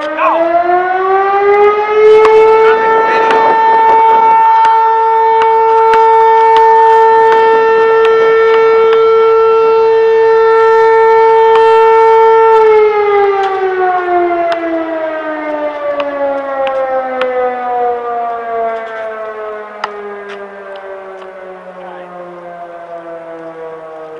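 Town noon whistle, a siren, winding up over about two seconds, holding one loud steady wail for about ten seconds, then slowly winding down in pitch and fading through the rest.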